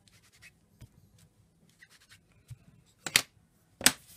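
Faint ticks and handling noises, then two short scratchy rubs a little over half a second apart near the end, from hands working wooden rubber stamps and paper on a plastic craft mat.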